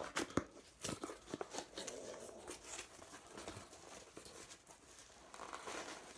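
A thin, soft cardboard box being torn open by hand: a quick run of sharp rips in the first couple of seconds, then softer rustling and crinkling of card and packing.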